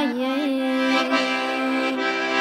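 Accordion playing steady sustained chords, an instrumental passage between sung lines of a Kazakh folk song.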